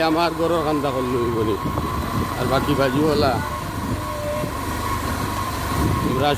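A steady, high-pitched whine held for about five seconds over a low rumble, with a man speaking briefly at the start and again in the middle.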